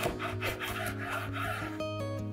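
A large kitchen knife sawing through the crisp crust of a baked stuffed baguette, a rasping back-and-forth in several strokes that stops shortly before the end, with soft background music underneath.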